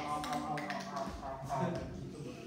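Light taps and clicks of small objects being handled, with faint murmured voice between them.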